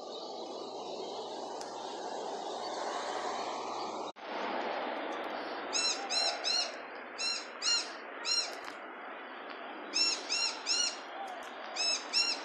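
A small bird chirping: short, high notes in quick clusters of two or three, starting about six seconds in, over a steady outdoor noise. The steady noise breaks off for an instant about four seconds in, at a cut.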